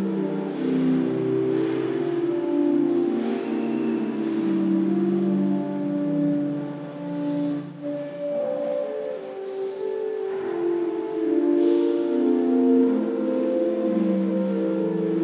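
Pipe organ playing slow, sustained chords that shift every second or so, with a brief lull about halfway through.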